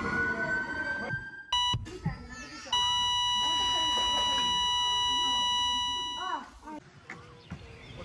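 Dramatic sound effects: a siren gliding upward fades out about a second in. Two short electronic beeps follow, then the long, steady, unbroken tone of a heart monitor flatlining, held about three and a half seconds before it fades, marking a death.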